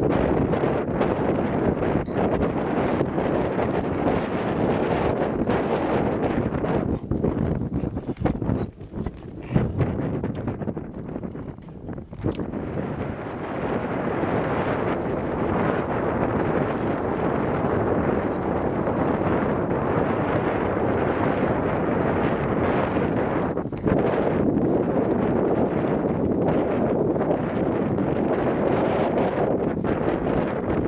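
Wind buffeting the microphone, mixed with the scrape of long-distance skate blades and poles on thin new ice under a light covering of snow. The noise drops for a few seconds about eight seconds in, then carries on steady.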